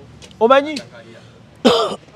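A man clears his throat once, near the end, after a brief voiced sound.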